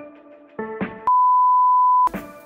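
A few struck notes of intro music, then about a second in a loud, steady single-pitch test-card beep, the tone that goes with TV test bars, which cuts off abruptly.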